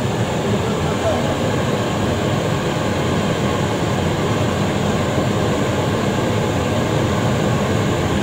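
Riello R40 G10 oil burner firing: the steady, even noise of its blower fan and flame, with no breaks.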